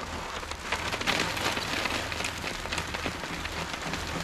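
Sand and small gravel being rubbed by a gloved hand across a wooden-framed wire-mesh sifting screen: a steady, dense patter of grains falling through the mesh into the tray below.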